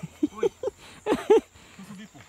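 A person laughing in short bursts: a quick run of laughs early on and another about a second in.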